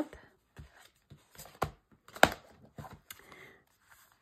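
A handmade cardstock mini-album folio being folded closed: paper and card handling with several sharp taps, the loudest a little over two seconds in.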